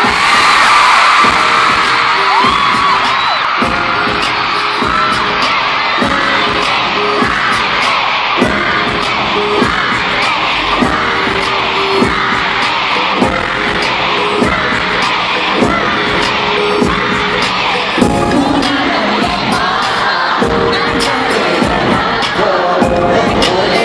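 Live pop concert music through the arena sound system with a steady beat, under a large crowd of fans cheering and screaming close to the microphone.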